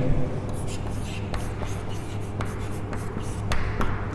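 Chalk writing a word on a chalkboard: a scatter of short taps and scratches as the letters are formed.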